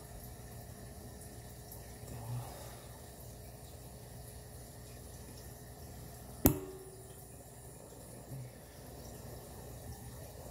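MAP gas torch flame running steadily, a low rumble with an even hiss, as it heats gold in a crucible. About six and a half seconds in comes a single sharp clink that rings briefly.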